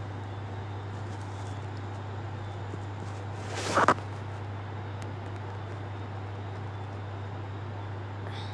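Steady low background hum with a faint hiss, and one brief rustle a little over three and a half seconds in.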